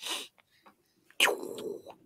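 A person's audible breathing into a voice-call microphone: a short breathy exhale at the start, then a longer sigh about a second in.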